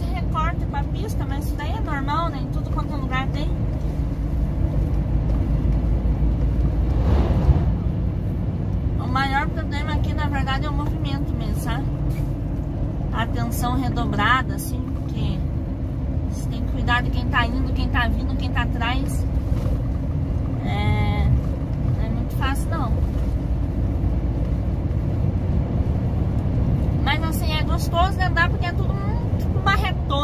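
Steady low drone of a Scania 113 truck's diesel engine and road noise inside the cab at highway cruising speed. Short stretches of someone talking come and go over it.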